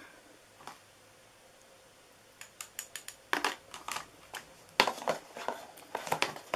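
Near silence for about two seconds, then a string of light clicks and taps, two of them louder, from a plastic powder tray and spoon as white embossing powder is put onto a stamped cardstock strip.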